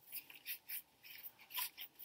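Tarot cards being handled and laid on the spread: about six faint, short papery brushing and sliding sounds.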